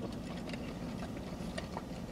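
Quiet car-cabin background: a low steady hum with a few faint small clicks.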